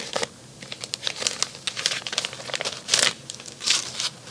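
Plastic packaging crinkling and rustling as it is handled, in irregular crackles with a couple of louder rustles about three seconds in and near the end.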